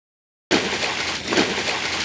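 Water poured from a plastic bucket splashing onto bunker sand in a steady gush, starting about half a second in.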